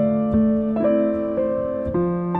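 Film-score piano playing a slow, gentle melody, a new note about every half second, each ringing on and overlapping the next.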